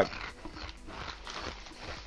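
A snack bag crinkling and rustling faintly as a hand reaches into it for potato bites.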